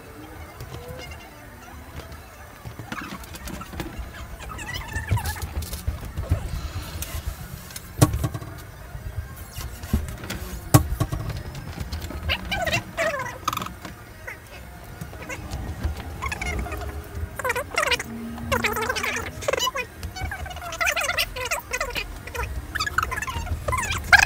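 Framed photographs being handled and hung on a pegboard wall: light scuffing with two sharp knocks, one about a third of the way in and another about three seconds later.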